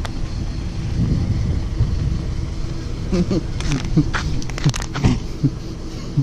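A steady low rumble, with short snatches of voices and a few sharp clicks in the second half.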